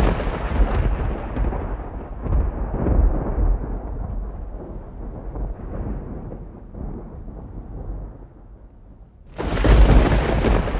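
A deep boom that rolls on like thunder and slowly fades over about nine seconds. A second boom hits near the end.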